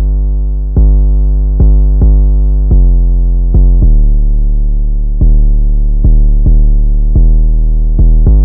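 Solo 808 bass line played back from FL Studio: long sustained 808 notes re-struck about ten times in an uneven, bouncy rhythm. The line steps down in pitch past the middle and comes back up toward the end.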